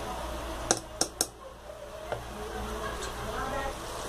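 A steel spoon clinking against the cooking pot three times about a second in, while stirring thick besan kadhi at the boil. Faint voices follow in the background.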